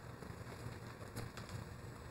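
Faint rustle of Bible pages being turned while a passage is looked up, with a couple of soft paper ticks about a second in, over quiet room tone.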